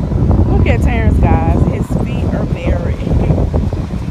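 Wind buffeting the microphone as a loud, steady low rumble, with children's high-pitched voices calling out about a second in and again around the middle.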